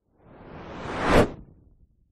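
Whoosh transition sound effect: a rushing swell that rises in pitch and loudness, peaks a little over a second in, then cuts off and fades quickly.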